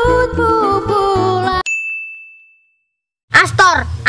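A song cuts off abruptly about a second and a half in, and a single bright ding rings out and fades over about a second. After a short silence a boy's voice starts near the end.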